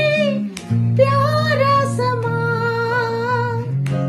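A woman singing a slow melody, holding long notes, over instrumental accompaniment with steady low chords. There is a short break in the voice about half a second in.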